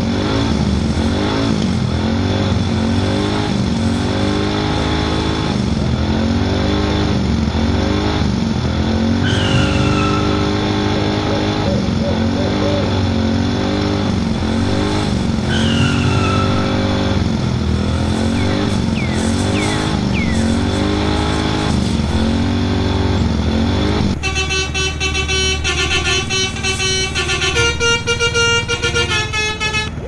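Vehicle sound effects with an engine revving up and down over and over. For the last six seconds or so, a multi-tone 'telolet' horn plays a quick melody, stepping from note to note.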